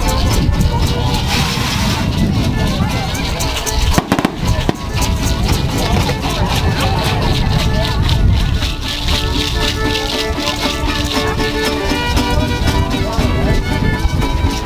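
Traditional folk dance music with a dense, rhythmic shaking of rattles, over the voices of a crowd.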